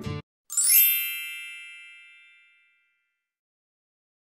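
A single bright chime sound effect, a ding, about half a second in, ringing out and fading over about two seconds.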